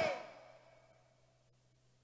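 A brief voice sound at the very start, its echo dying away within half a second, then near silence with a faint steady low hum.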